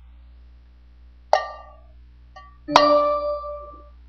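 A metal food can struck twice, each hit giving a ringing metallic clang. The second, about a second and a half after the first, is louder and rings longer.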